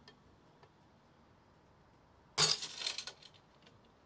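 A 3D-printed PLA-HF layer-adhesion test piece snapping under a hand pull against a hanging scale: one sharp crack about two and a half seconds in, followed by light clinking for under a second.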